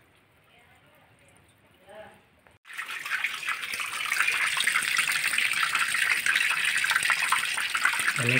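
Water gushing out of the drain pipe at the bottom of a plastic fish bucket and splashing onto the floor. It starts suddenly about two and a half seconds in after near quiet, then runs steadily: the bucket of catfish fry is being drained of its cloudy water.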